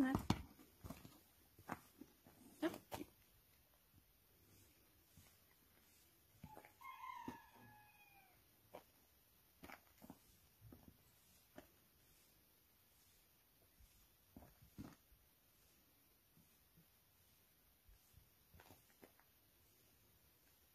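Mostly quiet open air with scattered faint clicks and knocks, and about seven seconds in a single drawn-out animal call that rises slightly and then falls in pitch.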